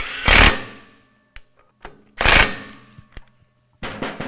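Cordless power tool buzzing bolts down through a PTO into the back of a crankshaft. It runs in two short bursts, one at the start and one a little past two seconds in, with faint clicks of handling between them. The bolts are being snugged in a criss-cross pattern, not yet torqued.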